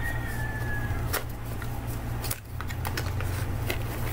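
Cardboard packaging of a small product box being opened and handled: scattered light clicks and rustles of card and paper over a steady low hum.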